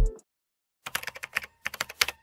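Keyboard-typing sound effect: a quick, irregular run of about a dozen key clicks starting about a second in.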